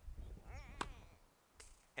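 A tennis racket striking the ball on a serve: one sharp pop a little under a second in. A short wavering cry sounds just before the hit, and a fainter tap follows near the end.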